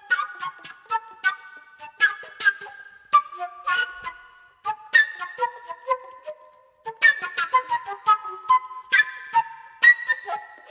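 Flute played in short, sharply attacked notes in irregular phrases, each note ringing on briefly, with two short breaks between phrases, just before the middle and about two-thirds in.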